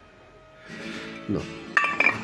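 Cast aluminium engine parts handled with a soft rustle, then a short metallic clink near the end as they knock together.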